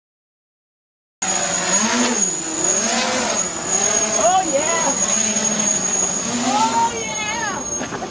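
Small quadcopter's electric motors and propellers running after a second of silence, a steady high whine underneath while the pitch slides up and down with the throttle.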